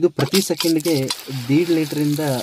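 A man talking over the steady hiss of water spraying from a rain gun sprinkler, the hiss starting suddenly at the beginning.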